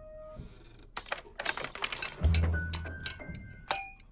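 China and glass ornaments clinking and rattling on a shelf: a run of sharp clicks and clinks, with a deep thud a little over two seconds in and a few held notes of music underneath.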